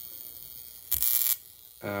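A violet wand's glass vacuum electrode gives a brief high-pitched hissing crackle, under half a second long, about a second in.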